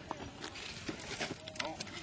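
Scattered light clicks and knocks of an Axial SCX10 scale rock crawler's tyres and chassis working down a rock drop, with a faint hiss in the middle.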